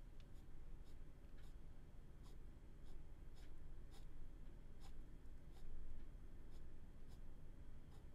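Ballpoint pen scratching on paper in short, quick shading strokes, quiet and irregular, about two strokes a second.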